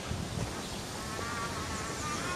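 Outdoor ambience with a steady low rumble; about halfway through, faint music begins as a thin melody of held high notes.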